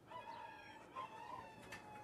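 A bird's long call, held for about a second and a half and dropping in pitch near the end; faint.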